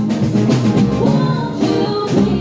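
A live band playing a rock song: bass guitar and guitar over a drum beat.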